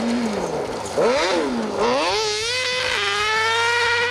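Kart-cross buggy's motorcycle-derived engine revving hard on a gravel stage. The revs fall for about a second, jump up sharply, dip, then climb again and hold high, with a short step down near the end as it shifts gear.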